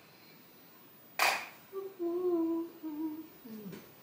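A sharp click about a second in, then a woman humming a few low notes with her mouth closed, the last one sliding down.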